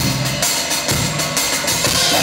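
Live rock band playing a steady groove, drum kit to the fore with electric guitar.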